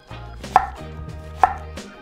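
Chef's knife slicing thin slices from an onion half, each stroke ending in a sharp knock on an end-grain wooden cutting board: two cuts a little under a second apart.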